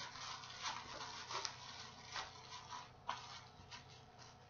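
Thin clear plastic literature bag and folded paper faintly rustling and crinkling as the excess paper is tucked in, with a few sharper crackles at irregular moments.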